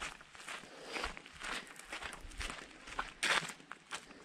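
Footsteps of a person walking on a gravel and block-paved path, about two steps a second, with one louder step a little after three seconds in.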